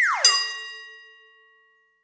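Edited-in transition sound effect: a quick falling pitch sweep leading into a bright, bell-like chime that rings out and fades over about a second and a half.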